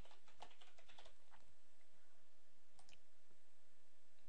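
Typing on a computer keyboard, a password being keyed in: a quick run of key clicks in the first second and a half, then two more clicks near three seconds in, over a faint steady hum.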